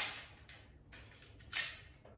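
Metal telescopic jian sword being handled: a sharp clack, then about a second and a half in a short sliding swish that fades away.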